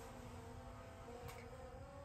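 A faint steady hum made of a few held tones, with no speech.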